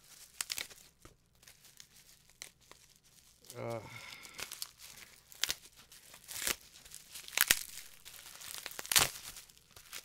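Packaging being torn open and crinkled by hand: irregular crackles and rips, with the loudest tears in the second half.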